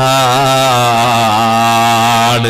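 A man's voice holding one long chanted note with a slightly wavering pitch: a preacher intoning a drawn-out vowel in the middle of his sermon.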